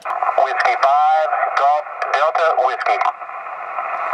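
Another amateur station's voice coming in over a ham radio transceiver's speaker, thin and band-limited with static, answering the operator's call for contacts. After about three seconds the voice stops, leaving the receiver's steady hiss.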